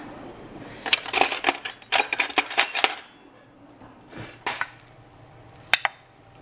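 Metal cutlery clattering and clinking in a wooden kitchen drawer organiser as a utensil is picked out, in two busy bursts about one and two seconds in, then a few lighter clatters and one sharp clink near the end.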